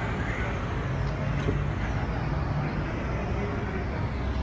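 Steady rumble of road traffic on a city street, with cars passing.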